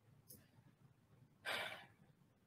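A woman's audible breath: one short, noisy exhale about one and a half seconds in, after a faint click near the start.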